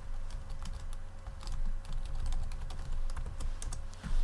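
Typing on a computer keyboard: quick, irregular key clicks over a low steady hum.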